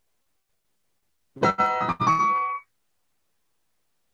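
A keyboard playing a C major chord with the F (the 11th) against it, then the F resolving down a step to D, the 9th: two short chords in a row, about a second and a half in.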